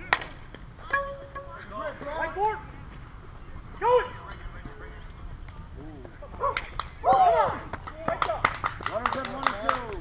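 A single sharp crack of a softball bat hitting the ball, right at the start. Players then shout and call out across the field several times, with a flurry of sharp clicks near the end.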